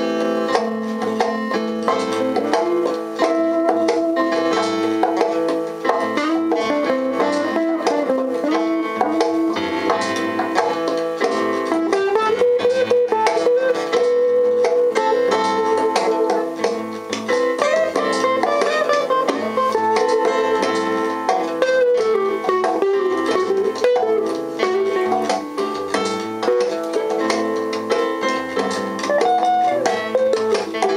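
A small band playing an improvised instrumental jam live, electric guitars and keyboard together, with a plucked melodic line wandering up and down over a steady accompaniment.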